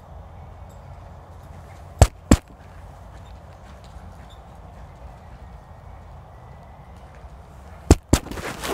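Two sharp microphone thumps about a third of a second apart, a couple of seconds in, and a third just before the end, over a steady low hum. They come from the microphone being tapped during a sound check.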